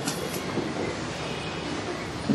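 Steady hiss of background noise with no speech: the even noise floor of the recording.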